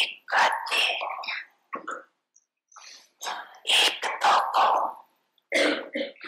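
A woman speaking into a microphone in short phrases with brief pauses.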